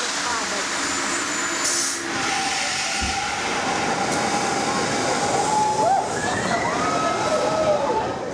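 Amusement-park drop tower ride running: a steady rush of noise with a short hiss of air about two seconds in, and drawn-out, wavering screams from the riders as the car comes down the tower.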